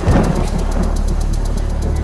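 Dramatic film-score sound effect: a deep boom hit just at the start, fading into a steady low drone with a fast, even ticking over it.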